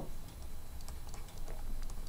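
Faint, irregular light clicks and taps of a pen stylus on a writing tablet, over a low steady hum.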